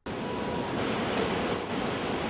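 Steady rushing noise of wind on the microphone, cutting in suddenly and holding level.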